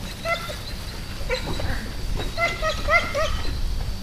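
A dog gives short, high-pitched barks in quick bursts: two near the start, one a little after a second, then a run of about five toward the end.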